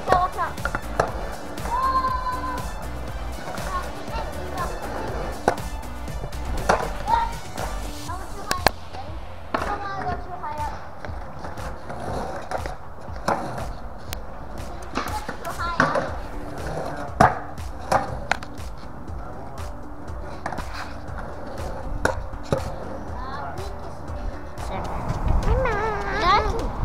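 Skateboards rolling on a concrete bowl, with repeated sharp clacks and knocks of decks and wheels hitting the concrete, over background music.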